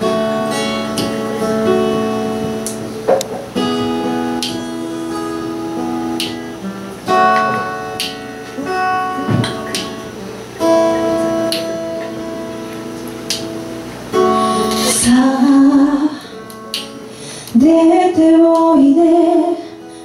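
Acoustic guitar playing a slow intro of ringing chords, a new chord struck about every three and a half seconds. A woman's singing voice comes in about fifteen seconds in.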